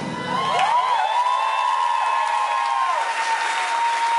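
The band stops and the audience applauds and cheers, while a female singer, unaccompanied, holds a long high note with sliding runs around it.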